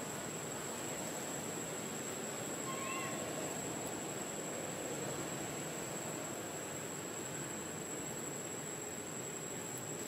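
Steady outdoor ambience: an even hiss with a constant thin high-pitched whine, and one brief faint chirp about three seconds in.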